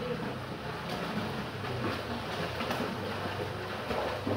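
Swimmers splashing in a pool, a steady wash of kicking and arm strokes with small irregular splashes.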